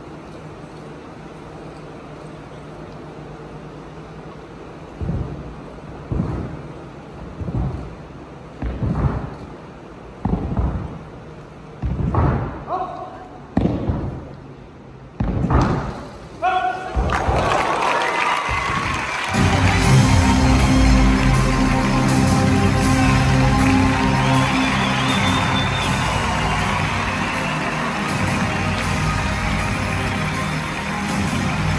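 A wooden Korean plank (teeterboard) thumping again and again as two acrobats take turns landing on it and launching each other, roughly every second and a half and growing louder. About 17 seconds in, loud music with a heavy low beat starts and carries on.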